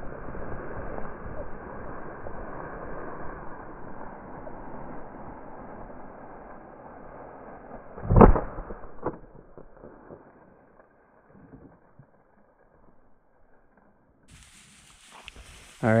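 A single shotgun shot at a flushing rooster pheasant about eight seconds in, sharp and the loudest sound, with a fainter click about a second later. Before the shot a rushing, rustling noise fades away, and the whole passage sounds muffled.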